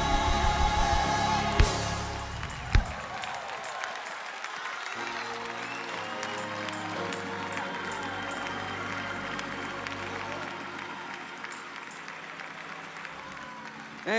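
A gospel choir and band end a song with two sharp drum hits about two and three seconds in. Congregation applause and cheering follow over soft, sustained keyboard chords.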